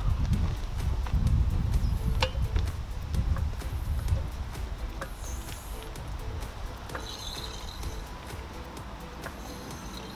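Wind buffeting the microphone in gusts, heaviest in the first few seconds and easing off later, with a few faint clicks from a low-profile floor jack as its handle is pumped.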